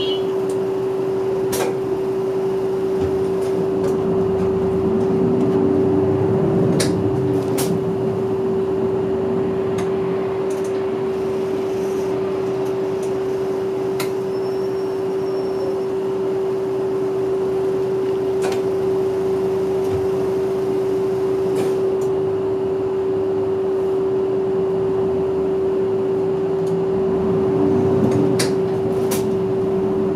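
Inside a city bus moving slowly in traffic: engine and road rumble under a steady, unchanging hum, with scattered rattle clicks from the cabin. The rumble swells twice, about five seconds in and again near the end, as the bus pulls ahead.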